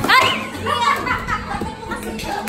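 Young children's excited, high-pitched voices and squeals overlapping, with a lively group of kids playing close by.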